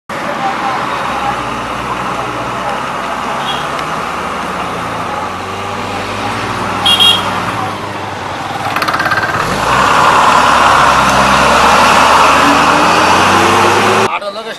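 Motor vehicle engine running amid street noise. A brief high-pitched sound comes about seven seconds in, and the noise grows louder from about ten seconds.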